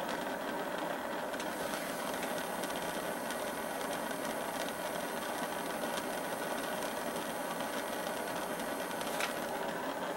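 Butane torch burning with a steady hiss, its flame heating a socket that holds a brass cartridge case for annealing. A faint click near the end.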